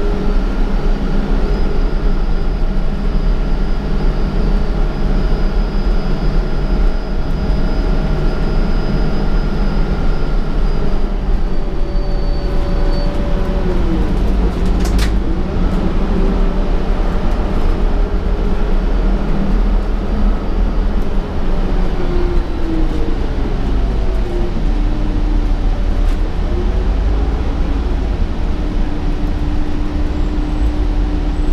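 Interior of a 2015 Gillig Advantage transit bus under way: the engine and drivetrain run with a steady low rumble and road noise, and whining tones hold for a while, drop in pitch, then rise again near the end as the bus changes speed. A single sharp click rings out about halfway through.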